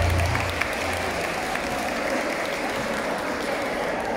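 An audience applauding in a large hall, with the band's last low note dying away about half a second in.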